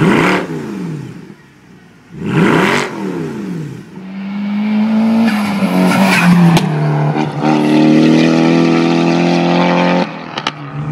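A 2012 Mercedes-Benz C63 AMG's V8 blipped twice at the tailpipes, two short loud revs that rise and fall in pitch. Then a Nissan Silvia S15's engine runs under load, dipping slightly in pitch and then holding a steady note.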